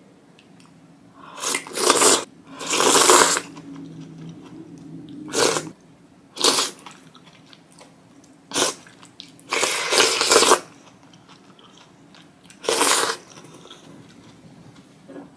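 Close-up eating sounds of spicy ramen: a series of loud noodle-and-soup slurps, each about half a second to a second long, with quieter chewing between them.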